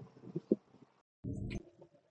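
Faint street sounds with a few short, low sounds, broken off abruptly about halfway through by an edit, then the low rumble inside a moving city bus.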